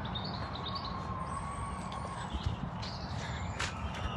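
Steady outdoor background noise with one long, faint, high scream from people far off, starting about a second in.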